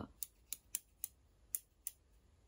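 Small metal embroidery scissors with ornate handles being worked open and shut in the air, the blades closing with six short, sharp clicks, about three a second, with a brief pause in the middle.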